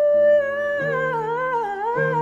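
A woman's wordless singing of a spiritual, close to humming: a long held note, then a wavering melismatic run that dips and climbs back up, over soft sustained accompaniment chords.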